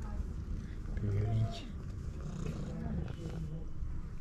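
A cat being stroked, purring and making a few short, low meows: one about a second in, and more past the middle.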